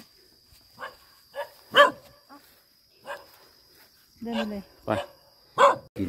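A dog barking, a few short single barks, the loudest about two seconds in.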